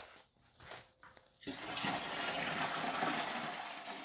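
Well water poured from a plastic pitcher into the upper stainless-steel chamber of a Berkey gravity water filter: a steady pouring splash that starts about a second and a half in, after a near-silent moment.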